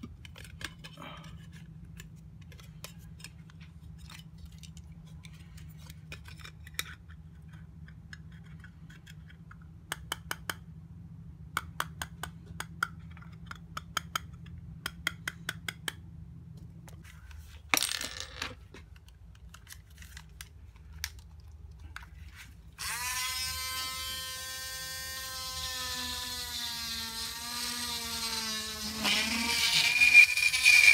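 Light clicks and taps of clear plastic discs and a metal jar-lid ring being handled. About 23 s in, a small handheld electric drill starts with a steady whine, which drops in pitch and gets louder near the end as it comes under load.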